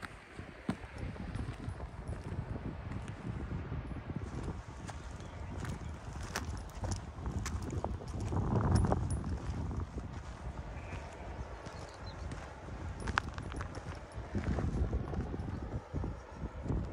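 Footsteps of a walker on a dirt and grass path, with wind rumbling on the microphone and swelling into a louder gust about halfway through.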